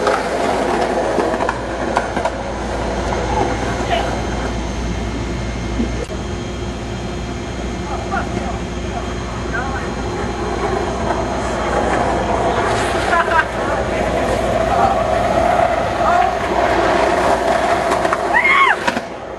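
Skateboard wheels rolling down a concrete slope under seated riders: a steady rumble with occasional sharp clacks. It grows louder over the last several seconds as a rider comes down toward the microphone.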